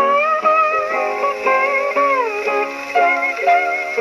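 1928 78 rpm shellac record of Hawaiian guitar music playing acoustically on a Columbia 204 portable wind-up gramophone: a sliding steel-guitar melody over plucked guitar chords, with a long falling glide about two seconds in.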